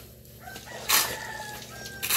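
Steel hoes chopping and scraping through a heap of sand and cement mixed by hand on the ground, with one stroke about a second in and another just after. A rooster crows for about a second over the scraping.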